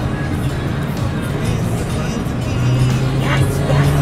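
Car cabin noise while driving: a steady low road and engine rumble, with music playing over it.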